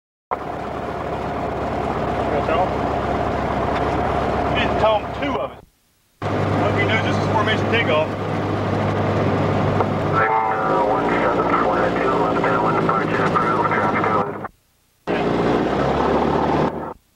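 Piston engine and propeller of a single-engine light aircraft running in a steady drone as it taxis and rolls for takeoff, with voices over it. The sound cuts out completely twice, each time for about half a second.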